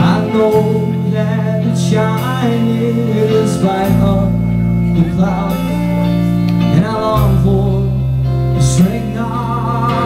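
Rock band playing live, an instrumental passage: electric guitars over sustained bass notes that change every few seconds, with a wavering melody line above.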